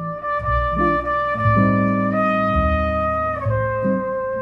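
Jazz trio of trumpet, upright double bass and guitar playing; the trumpet holds long notes, stepping up a note about two seconds in and back down near the end, over the bass and guitar.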